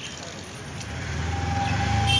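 A motor vehicle's engine running close by, its low rumble growing louder over the second half, with a brief steady tone near the end.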